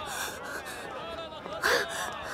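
A young woman gasping for breath as she runs, with two loud, sharp breaths, one at the start and one near the end, over faint background voices.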